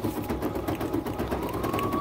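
BERNINA B 880 Plus embroidery machine stitching a design onto a cap, its needle running in a steady rapid patter of ticks.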